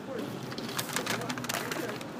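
Rustling and irregular clicking from a phone being moved about in the hand while it films.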